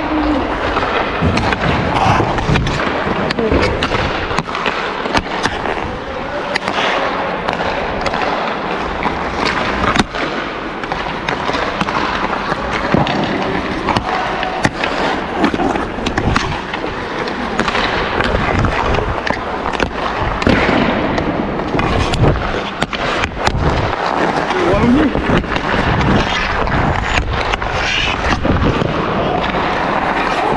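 Ice hockey practice on the rink: skate blades scraping and carving the ice, with frequent sharp clacks of sticks hitting pucks and pucks striking the boards, echoing in the arena, under players' voices.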